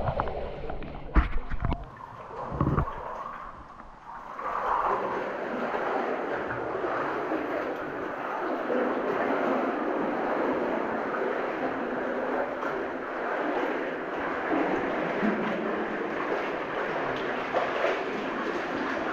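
Water splashing and sloshing as someone wades through knee-deep flood water in a mine tunnel, steady from about four seconds in. A couple of sharp knocks come in the first few seconds.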